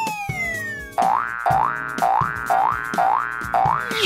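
Cartoon sound effects over background music. A falling whistle-like glide fades out in the first half second, then six quick rising boing-like swoops follow, about two a second.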